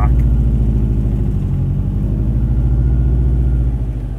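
Turbocharged engine of an all-wheel-drive Mazda Miata running steadily under way, heard from inside the stripped, roll-caged cabin as a low, even hum.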